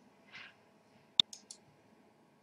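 A computer mouse button clicked once sharply, followed quickly by two fainter ticks, about a second in.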